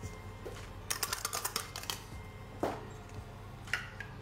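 A quick run of light, rapid clicks lasting about a second as dry yeast granules are tapped out of a small plastic bowl into a stainless steel bowl of water, followed by two separate soft knocks of the bowl being handled and set down.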